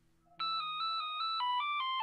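Mobile phone ringtone starting about half a second in: an electronic melody of short, stepping notes.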